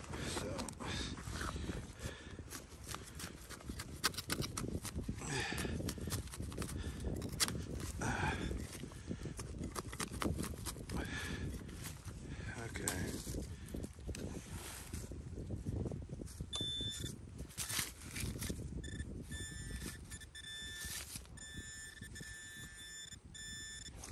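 Digging into soil with a hand tool for a shallow metal-detector target: repeated scrapes and knocks of the blade in the dirt. In the last third a metal detector's steady electronic tone sounds on and off as the target is located in the hole. The target turns out to be a lead musket ball.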